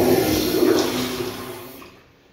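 Commercial toilet with a chrome manual flushometer valve flushing: a loud rush of water into the bowl, already under way, that tails off and fades out near the end, with a steady low tone under the rush.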